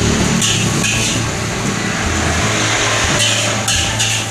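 Nasi goreng being stir-fried in a wok over a gas burner: a steady rushing sizzle with a low hum, broken by a few short scrapes of the metal spatula against the wok.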